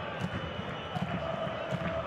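Large football stadium crowd: a steady din of many voices. A single held note rises out of it about halfway through.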